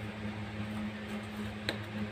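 Steady low hum of room background, with a single faint tap near the end as a plastic spoon moves in a plastic bowl of dry powdered herbs.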